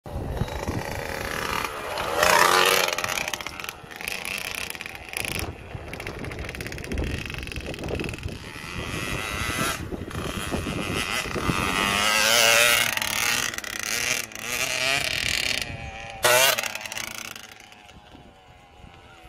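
KTM 65 two-stroke motocross bike revving as it rides past, its engine note rising and falling with the throttle, loudest about two seconds in and again about twelve seconds in.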